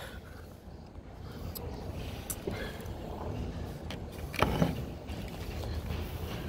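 Low steady outdoor rumble, with a few faint clicks and a brief voice sound about four and a half seconds in.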